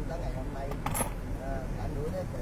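Steady low road and engine rumble heard from inside a moving car, with faint voices under it. A single sharp click sounds about a second in.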